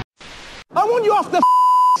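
A voice speaks a few words, then a steady high-pitched censor bleep of about half a second covers a swear word.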